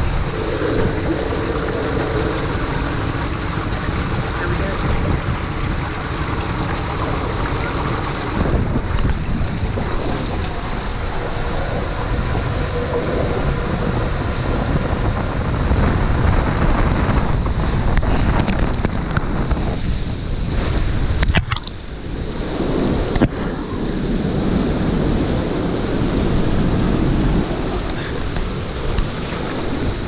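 Loud, steady rush of water and a rider sliding down an enclosed plastic water slide tube, close on the microphone, with a few sharp knocks a little past two-thirds of the way through.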